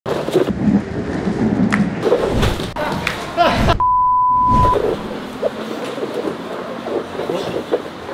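Grappling on gym mats, with bodies thumping and scuffing and voices around them. About halfway through, a steady high beep lasting about a second replaces all other sound, an edited-in bleep typical of censoring a word. Quieter scuffing on the mats follows.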